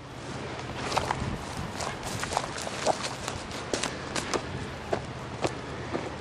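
A 4x4 vehicle's engine running low and steady, with irregular sharp clicks and snaps over it.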